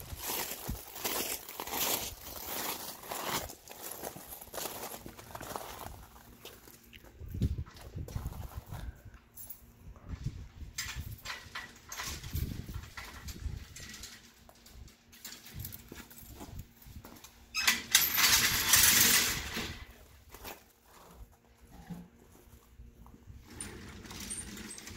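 Footsteps on gravel and the clicking and rattling of keys and a padlock on a folding metal scissor gate, with a louder scraping rattle lasting about two seconds roughly three quarters of the way through.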